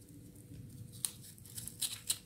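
Small paintbrush and fingertips working over the fleshy leaves of a potted echeveria: faint dry rustling, then a run of sharp little crackles from about a second in.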